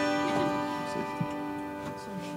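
Zither strings ringing and slowly fading after a strummed chord, with a few soft plucked notes and light ticks.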